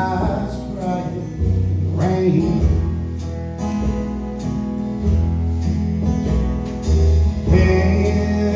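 Live acoustic band playing: strummed acoustic guitars over held upright-bass notes and drums, with a fuller strum near the end.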